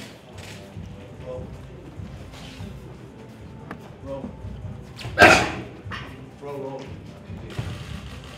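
Boxing mitt work: gloved punches landing on focus mitts, with one loud, sharp vocal cry about five seconds in as a punch is thrown. Faint voices carry through the gym behind it.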